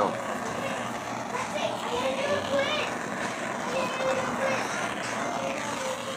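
Handheld blowtorch flame burning with a steady hiss, with faint children's voices under it.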